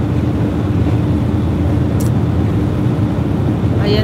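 Roll-on/roll-off ferry under way: a steady low engine drone with a constant hum, mixed with rumbling wind on the microphone. A brief hiss about two seconds in.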